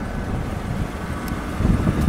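Steady low rumble of an idling vehicle engine, with wind noise on the microphone.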